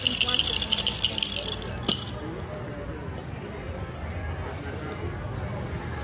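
Dice rattling in a pai gow dice shaker for about two seconds, ending with a sharp click, then the steady murmur of casino background noise.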